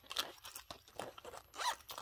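A small zippered fabric pouch being handled and tucked into a vinyl mesh bag: a string of short, quiet scrapes and rustles, like a zipper being worked.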